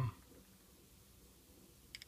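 Quiet room tone with a faint steady hum, and one brief faint click near the end.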